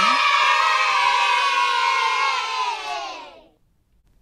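A crowd of children cheering and shouting together, an edited-in cheer sound effect, louder than the talk around it; the voices slide down in pitch and fade out about three and a half seconds in.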